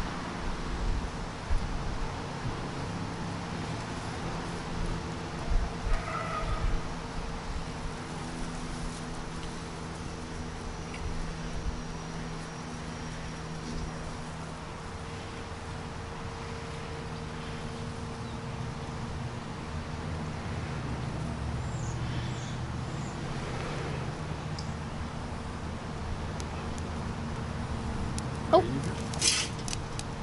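Breaths blown into a pine-needle tinder bundle around a glowing char-cloth ember to coax it into flame, heard as irregular soft puffs over a steady low hum.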